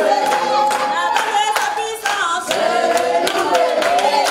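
A congregation singing together in chorus, keeping time with steady hand clapping.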